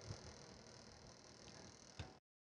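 Near silence: a faint steady hiss of room tone, with a small tick just after the start and another near the end.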